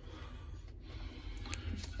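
Low background noise: a faint steady rumble with a couple of light clicks in the second half.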